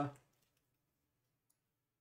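The end of a spoken word, then near silence: room tone, with one faint click about one and a half seconds in.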